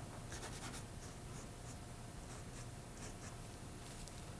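Paintbrush loaded with acrylic paint scratching and dabbing on canvas in short, faint strokes, several a second, over a low steady room hum.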